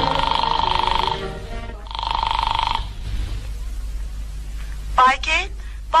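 Telephone ringing twice, each ring about a second long with a trilling tone, over the tail of fading orchestral music. A woman's voice starts near the end.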